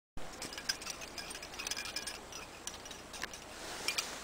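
Metal climbing gear, carabiners and quickdraws, clinking and jingling in irregular clusters of short, ringing clicks.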